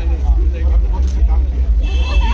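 People's voices talking, with no words clear enough to pick out, over a steady deep low rumble.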